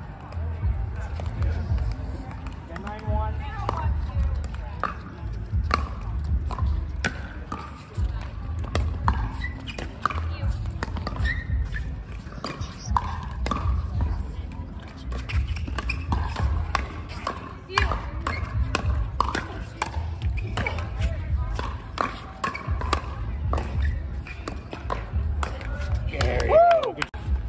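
Pickleball rallies: paddles striking the plastic ball in sharp pops again and again, at irregular intervals, with the ball bouncing on the hard court, over background voices and a low rumble.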